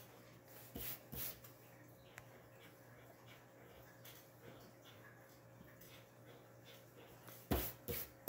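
Pencil on paper: faint scratching and erasing. There are a few louder rubbing strokes about a second in and a stronger cluster near the end, where the pencil's eraser is rubbed across the paper.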